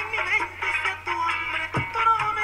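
A man singing a song over recorded music with a steady beat, with a low thump near the end.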